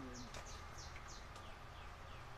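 A bird singing: a rapid series of short, high notes that each slide downward, about four a second, turning lower and fainter near the end.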